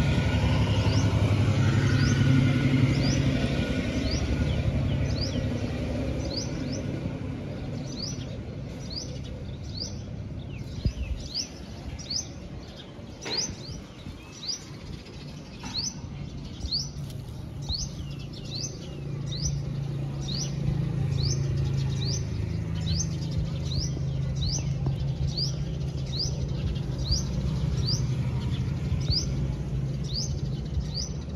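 A bird repeating one short, high, rising chirp at a steady pace, a little more than once a second, over a low steady hum. There is a single click about halfway through.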